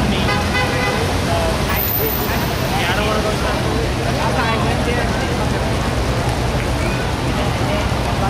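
Busy city-square ambience: a steady wash of road traffic with passers-by talking, their voices clearest near the start and around the middle.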